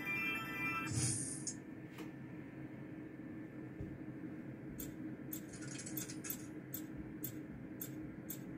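Roulette gaming machine's electronic win jingle, a climbing run of notes that ends with a short burst about a second in, while the winnings count up into the bank. Then the machine hums steadily, and from about five seconds in there is a string of short, irregular clicks as chips are tapped onto the touchscreen table.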